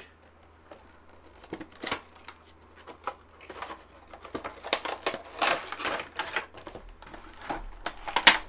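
Cardboard Funko Pop window box and its plastic insert being handled as the vinyl figure is taken out: irregular rustling, scraping and clicking, busiest about five to six seconds in.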